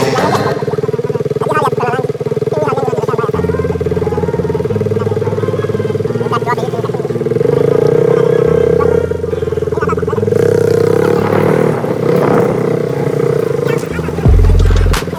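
Motorcycle engine running with a steady drone that swells louder a couple of times, with voices in the street.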